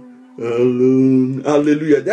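A man's voice singing a slow worship line unaccompanied, holding one long steady note from about half a second in, then breaking into shorter syllables near the end.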